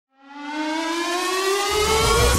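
Rising synth sweep opening a TV show's intro theme, fading in from silence and climbing steadily in pitch like a siren. A deep electronic bass comes in near the end.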